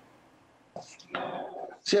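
A short near-silent pause, then a man's breathy, whisper-like vocal sounds (an intake of breath and a murmur) from about a second in, just before he starts speaking.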